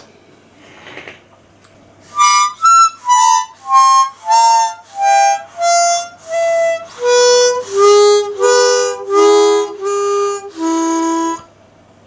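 A 1980s Hohner Sonny Boy harmonica played as about fifteen separate notes, some sounding as chords, stepping lower and lasting longer toward the end. The notes are still not really good, because the reeds are badly rusted, though it sounds better than before the cleaning.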